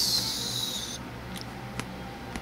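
A high, sharp hiss lasting about a second that cuts off suddenly, followed by a few faint light clicks.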